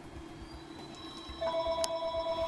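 A steady electronic tone, several pitches held together, sets in a little past halfway and keeps sounding, with a couple of faint clicks over it.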